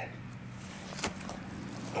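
Quiet outdoor background with a faint steady low hum and one sharp click about a second in.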